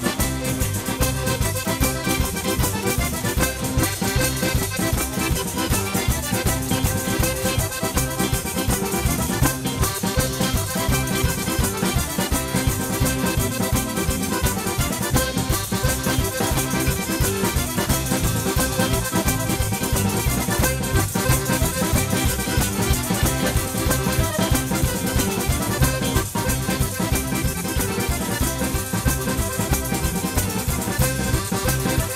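Live folk band playing a fast, driving traditional dance tune: large jingled tambourines beat out the rhythm over an accordion melody, with electric guitar and drum kit, continuously throughout.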